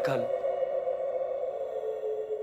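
A voice trails off at the very start, then the serial's background score holds a steady sustained drone of two held notes.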